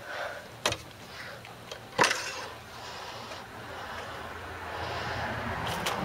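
Light handling sounds at a riding mower's engine as the yellow plastic oil-fill cap and dipstick are worked for an oil check: a small click, then a sharper click about two seconds in, followed by a soft rustle that slowly grows.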